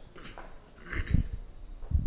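Handheld microphone being passed from one person to another: a few dull handling thumps and rustles picked up by the mic itself.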